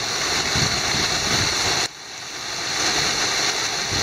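Snowmelt creek and waterfall rushing over rocks in a steady hiss. About halfway through the sound drops away suddenly, then swells back up.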